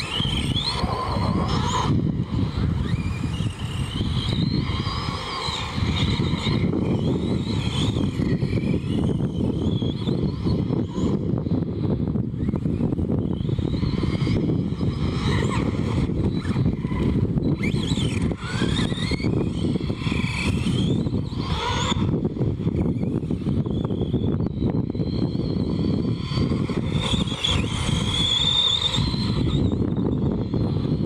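Arrma Big Rock RC monster truck driving on a dirt track: its electric motor and gears whine, rising and falling in pitch with each burst of throttle, over a steady low rumble.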